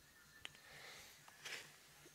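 Near silence, with one faint click about a quarter of the way in and a soft, brief noise a little past halfway.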